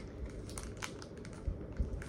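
Mailing package being handled and opened by hand, crinkling and rustling with scattered sharp clicks.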